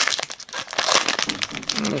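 Foil wrapper of a Magic: The Gathering booster pack crinkling and crackling in rapid bursts as hands pull it open.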